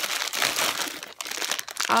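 Clear plastic bags of beads crinkling and rustling as hands handle them, in a dense run of irregular crackles.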